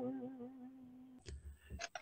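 A woman's sung note trails off as a steady hum, closed-lipped, fading out just over a second in. A few faint clicks follow in near quiet.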